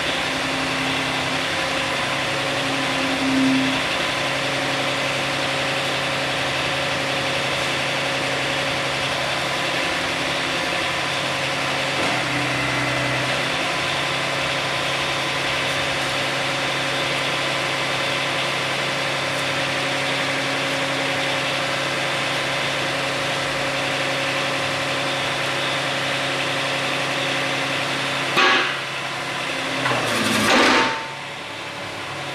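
Old crawler excavator's engine idling steadily at low revs, with a brief louder surge near the end.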